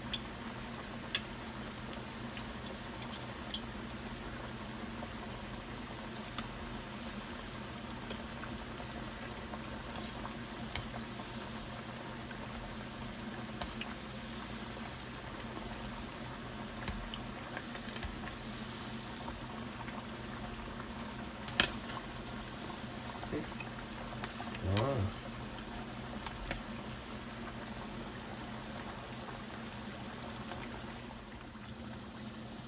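Cassava and taro cakes deep-frying in a large stainless steel pan of hot oil: a steady, dense sizzle of bubbling oil, with a few light clicks of metal tongs against the pan. The heavy bubbling is the sign that the cakes are still cooking out moisture and are not yet crisp.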